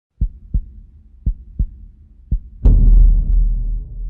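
Synthesized heartbeat sound effect for a logo reveal: low thumps in pairs, then a deep boom about two and a half seconds in that fades away over the next two seconds.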